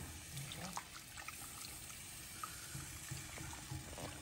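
Whole milk being poured faintly from a measuring cup into a roux in an enamelled pan, adding the liquid for a cheese sauce.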